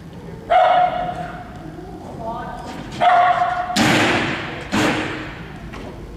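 A dog barking, with sharp barks about four and five seconds in. A person's drawn-out shouted calls come about half a second in and at three seconds.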